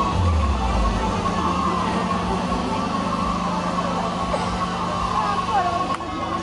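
Street crowd chatter and voices over a steady low hum, with a few low thumps near the start.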